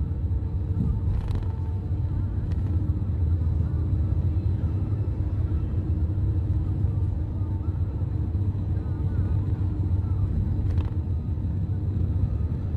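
Steady low rumble of tyre, road and engine noise heard inside a car cabin at highway speed, with a few faint clicks.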